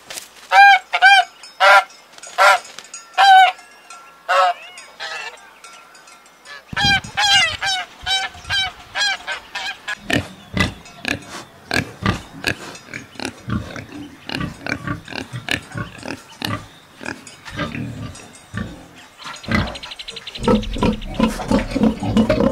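Domestic geese honking, loud separate calls for the first several seconds, then a run of pigs grunting and snorting in short rough bursts for the rest.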